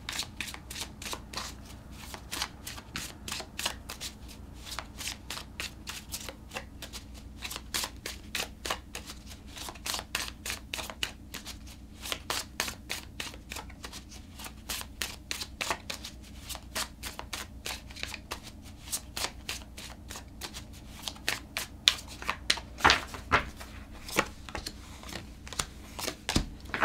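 A tarot deck being shuffled by hand, cards passed from one hand to the other in a long run of quick flicks and snaps, with a few louder snaps near the end.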